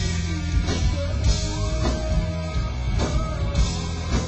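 Live rock band playing a song, loud and dense, with a steady drum beat.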